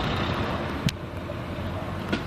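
Steady rushing noise of road traffic, with a single sharp click a little under a second in.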